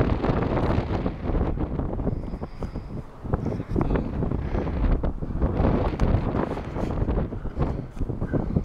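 Wind buffeting the camera microphone: a gusting low rumble that rises and falls unevenly.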